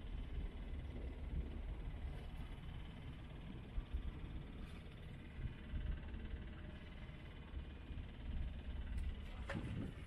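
Wind buffeting the microphone over the rush of water along a sailboat's hull as it sails through small waves, with a sharper splash near the end.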